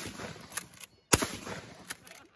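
A single shotgun blast about a second in: one sharp report with a short echo trailing off.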